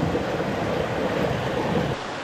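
Steady rush of a small mountain stream's water running over rocks, heard close by.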